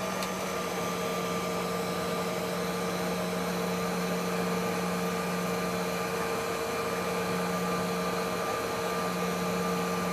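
Steady whine and rush of a Canadair Regional Jet's rear-mounted GE CF34 turbofan engines at taxi power, heard inside the cabin, with a low hum and a few higher steady tones.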